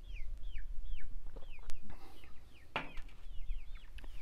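Songbirds chirping in short notes that slide downward in pitch, a few each second. A single short, sharp sound stands out just before three seconds in.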